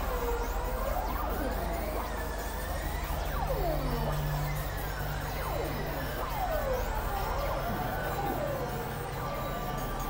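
Experimental synthesizer drone music: many overlapping tones sweeping up and down in pitch over a steady low drone.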